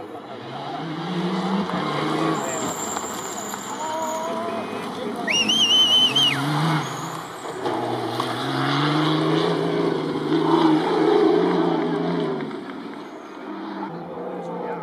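Off-road rally car engines running hard on a gravel stage, their pitch climbing and dropping as the cars accelerate and change gear. Spectators' voices are mixed in, with a shrill whistle about five seconds in.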